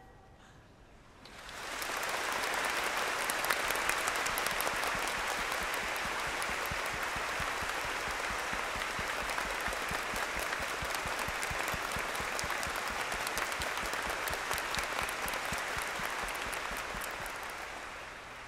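A large seated audience applauding: the clapping swells in over the first two seconds, holds steady, and tapers off near the end.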